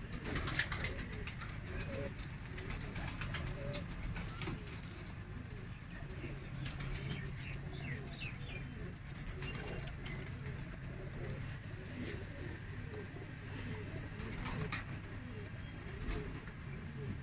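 Domestic pigeons cooing, a low coo repeated over and over, with scattered short clicks.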